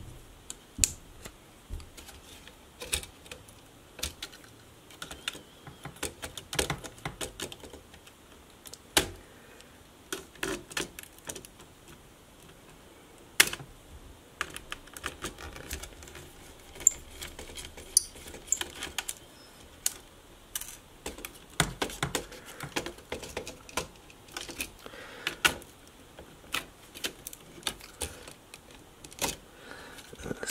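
Scattered clicks, taps and light scrapes of a small screwdriver and fingers working on a netbook's motherboard screws and plastic case, with a few sharper knocks, the loudest a little before halfway.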